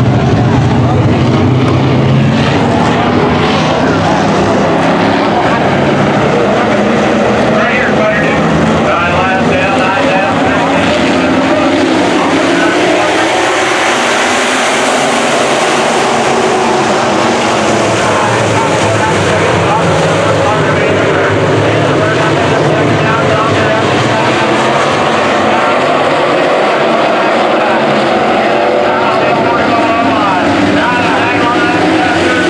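A field of Sport Mod dirt-track race cars running laps, their V8 engines revving and easing as the pack goes around. It is loudest about halfway through as the cars pass close by.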